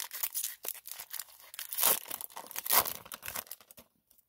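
A foil Pokémon booster pack wrapper being torn open and crinkled by hand, in a run of irregular crackling rips. The loudest come about two and about three seconds in, and the sound stops just before the end.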